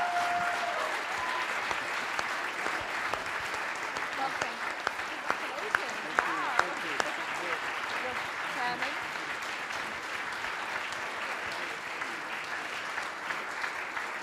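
Audience applauding, loudest at the start and slowly easing off.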